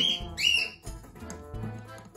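A cockatiel gives two short whistled chirps about half a second apart, each rising and then holding level, over music with a steady beat.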